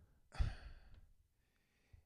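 A man's short, breathy sigh into a close microphone, fading out within about a second.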